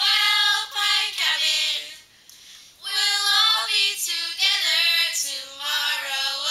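A few young girls singing a camp song together, unaccompanied, with a short break between lines about two seconds in.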